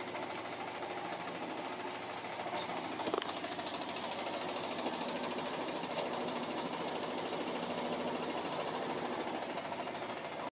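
GE GFQ14ESSNWW combination washer-dryer on its first spin of the wash cycle: the drum turns with a steady mechanical whir and faint hum, and a few light clicks come about three seconds in.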